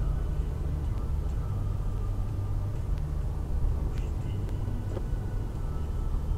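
Steady low drone of road and engine noise heard from inside a moving car's cabin.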